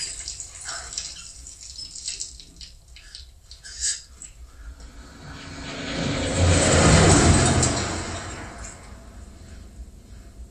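Water splashing and dripping with a sharp knock about four seconds in, then a vehicle drives past on a dirt road, its rumble swelling to the loudest point a little past halfway and fading away.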